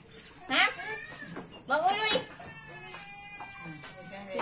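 Voices of a family with small children: two loud, high-pitched calls from a young child, about half a second and two seconds in, with quieter talk between them.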